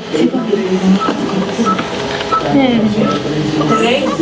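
Newborn baby crying in short wails that glide up and down in pitch, with a short high beep repeating several times in the background.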